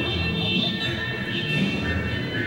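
Electronic dance score: a cluster of steady high tones over recurring low pulses, with no sharp hits.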